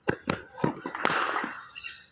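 Footsteps of a cricket bowler's run-up on a dirt pitch: a few short knocks, with a sharper knock about a second in followed by a brief hiss.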